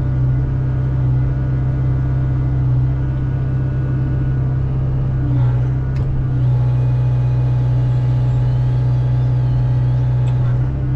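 Hyundai excavator's diesel engine running steadily under load, heard from the cab, while the Rotobec grapple saw's hydraulic chain saw cuts through a log.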